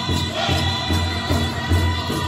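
Powwow drum group singing in high voices over a steady beat on a large shared drum, the dance song for the traditional dancers.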